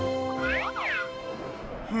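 Cartoon background music with held chords, and a cartoon sound effect of quick overlapping pitch sweeps that rise and fall about half a second in.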